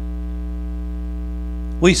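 Steady electrical mains hum, a low constant drone with a buzz of higher overtones, heard clearly in a pause between words.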